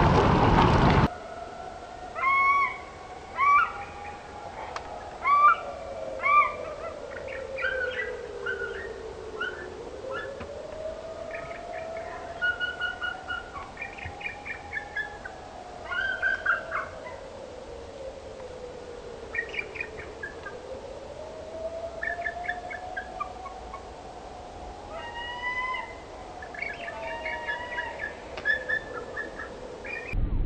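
About a second of a mallard flock quacking, then a cut to bald eagles calling in repeated bursts of high, thin, whistled chirps and chatter. Under the calls a faint tone slowly rises and falls in pitch, about once every ten seconds.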